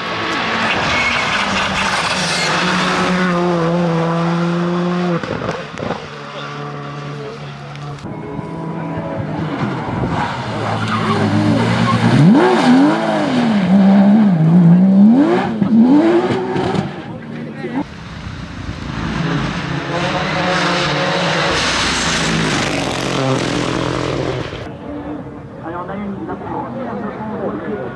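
Rally cars driven hard past one after another: first a Skoda Fabia R5 accelerating through the gears. About ten seconds in, a Porsche 911 GT3's engine revs hard, its pitch swinging up and down repeatedly through a corner, and then another car passes near the end.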